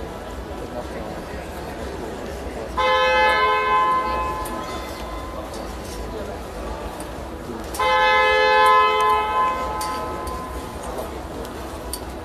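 Two steady horn blasts from the timekeeper's signal, each lasting a second or two and about five seconds apart, over the murmur of the sports hall; the second blast falls as the rest period between rounds runs out.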